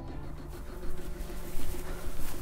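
Soundtrack music of steady held tones, joined from about halfway by a louder rustling hiss.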